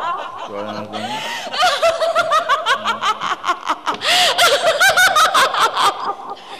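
Loud stage laughter: long runs of rapid ha-ha bursts, several a second, broken by short pauses for breath.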